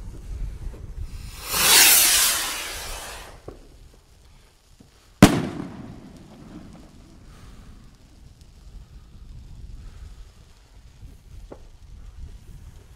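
Zink 910 200-gram firework rocket ('Bombenrakete') launching with a loud rushing hiss of about two seconds. About five seconds in, its shell bursts with a single sharp bang, the loudest sound, which echoes away.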